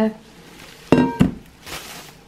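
Enamel steel kettle set down on a countertop about a second in: a knock with a short ringing tone, a second knock right after, then a brief rustle of plastic bubble wrap near the end.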